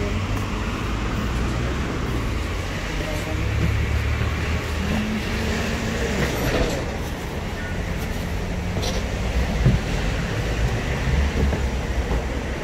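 Street traffic noise: a steady low rumble of vehicles on the road alongside.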